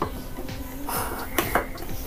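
Light knocks and clicks against a plate as a shaped tapioca vada is set down on it, the two sharpest close together about a second and a half in, over steady background music.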